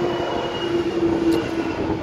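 An accessory-drive belt pulley on a Mercedes GL500 engine, spun by hand with the drive belt off, its bearing whirring in a steady hum that dies away near the end as it slows. This is the kind of raised bearing noise that was found on the water pump and the belt tensioner pulley.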